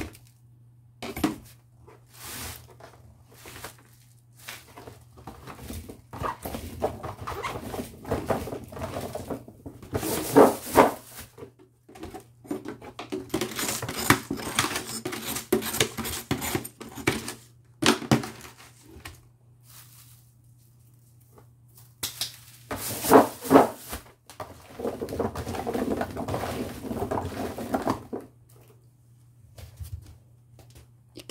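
Diced radish cubes being tossed and mixed by hand with salt in a plastic basin, coming in several bouts of clattering and rustling with quiet pauses between.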